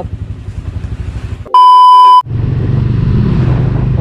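Small single-cylinder motorcycle engine idling with a low pulse. About one and a half seconds in, a loud, steady, single-pitched electronic beep lasting under a second is laid over the sound. After it the engine runs louder and steadier as the bike is ridden.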